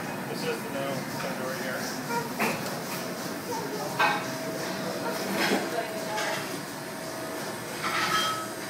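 Faint voices and room noise, with a steady hum through the middle and a sharp click about four seconds in.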